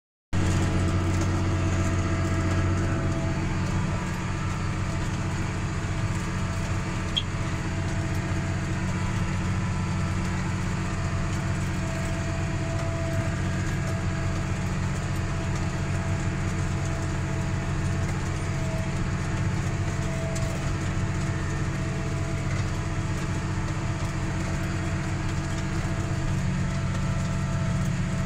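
Tractor engine running steadily under load, heard from inside the cab while it pulls a seed drill: a steady low drone.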